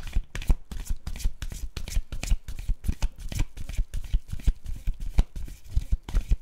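A deck of tarot cards being shuffled by hand: an irregular run of quick card slaps and flutters, about four a second.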